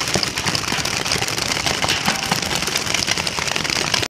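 Many paintball markers firing at once in rapid, overlapping shots, a dense steady crackle.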